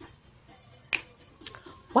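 Faint music from a television commercial playing in the room, with a sharp click about a second in and a smaller one shortly after.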